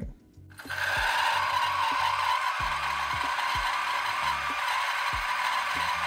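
DF64V coffee grinder's stock 64 mm flat burrs grinding coffee on a fine setting: a loud, steady screeching grind that starts about half a second in.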